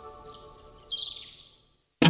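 Tail of a programme's opening jingle: the music fades away under a few high bird chirps, which die out about a second and a half in, leaving a brief silence.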